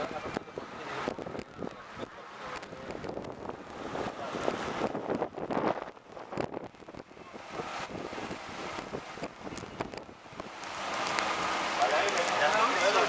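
Wind buffeting the microphone on a moving motorboat, with faint, indistinct voices of passengers.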